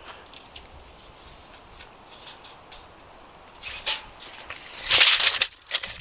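Handling noise from a cordless drill being lifted and set on top of a wooden post: a faint knock about four seconds in, then a short, louder scraping rustle about five seconds in. The drill motor does not run.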